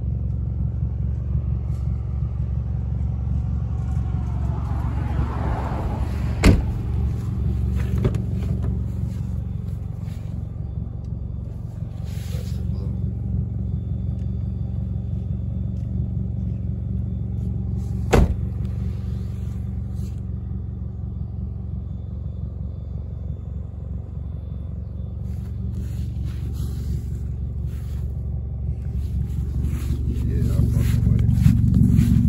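A car engine idling steadily with a low rumble. A sharp knock comes about six seconds in and another about eighteen seconds in.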